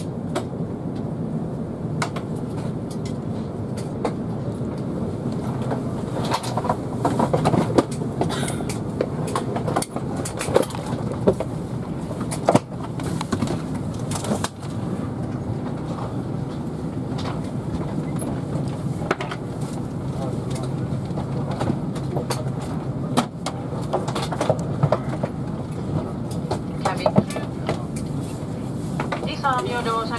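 Airbus A350 cabin at the gate: a steady low hum from the aircraft, with passengers' voices in the background and scattered clicks and knocks.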